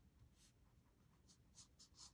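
Near silence, with a few faint short swishes of a watercolour brush stroking across paper, coming closer together in the second half.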